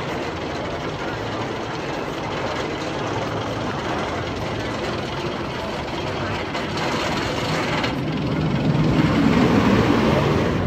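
Steel Vengeance's roller coaster train running on its steel track over the wooden support structure: a steady rushing roar that grows louder, with a deeper rumble building near the end as the train comes closer.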